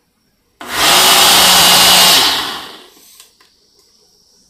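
Ninja Auto-iQ blender motor blending a smoothie of fruit and ice: it starts abruptly about half a second in and runs loud and steady with a low hum. Shortly after two seconds in it winds down and stops as the blend program ends.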